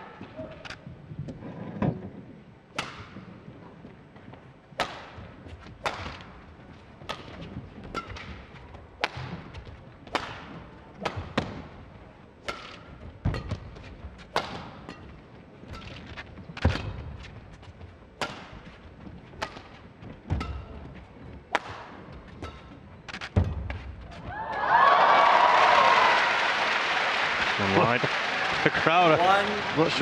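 Badminton rally: the shuttlecock is struck back and forth by rackets, about one sharp hit a second ringing in a large hall. Near the end the rally stops and the crowd answers with a loud reaction and groans as the point is lost by the home player.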